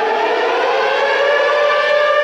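Air-raid-style siren winding up: a single tone that rises slowly in pitch and then holds steady.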